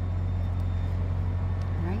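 A steady low machine hum with faint background hiss, unchanging throughout; a woman starts speaking right at the end.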